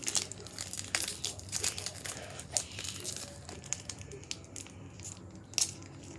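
Foil wrapper of a Pokémon card booster pack crinkling as it is handled and worked open by hand, in irregular sharp crackles, busier in the first half, with one louder crackle near the end.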